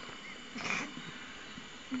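A short yell or cry from a person about half a second in, over a steady camcorder tape hiss.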